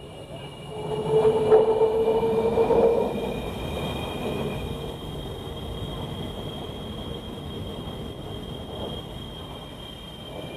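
Pratt & Whitney F119 turbofan engines of taxiing F-22A Raptors, running at low taxi power with a steady high whine. About a second in, a louder low tone and rush swells for about two seconds, then settles back.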